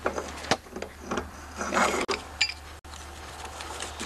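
Pipe wrench turning the starter clutch off the crankshaft of a 3.5 hp Briggs & Stratton engine: scattered metal clicks and ratcheting, with a rasping scrape about two seconds in.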